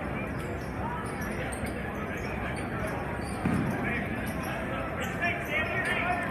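A basketball dribbled on a hardwood gym floor, with one heavier bounce about three and a half seconds in, over a steady noise of crowd voices in the hall. Sneakers squeak on the court in short high chirps in the last two seconds.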